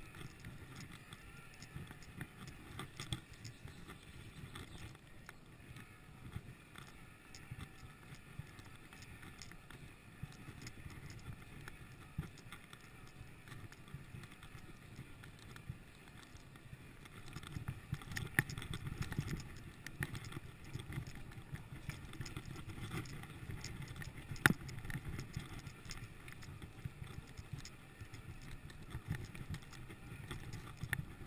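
Mountain bike riding over a dirt forest trail: a steady low rumble of tyres on the ground, with frequent clicks and rattles from the bike over bumps and small stones. It grows a little louder past the middle, and the sharpest knock comes about 24 seconds in.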